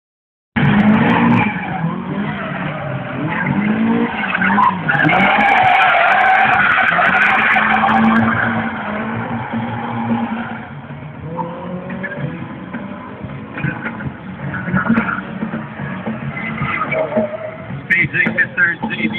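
A car's engine revving hard with its tyres squealing as it slides through the course, loudest from about five to eight seconds in, then easing off.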